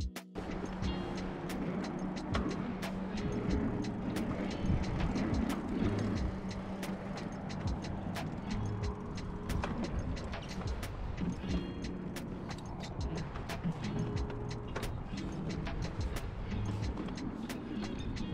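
Mountain bike rolling along a paved pump track: a steady rush of tyre and wind noise with frequent sharp clicks and rattles, under background music.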